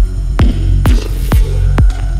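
Progressive psytrance track: a deep kick drum hitting about twice a second, each hit dropping in pitch, over a steady low bass, with hiss between the beats.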